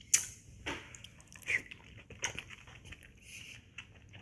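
A person eating a spoonful of cabbage soup: a sharp wet intake as the spoon goes in, then soft chewing with small mouth clicks and a few fainter wet sounds.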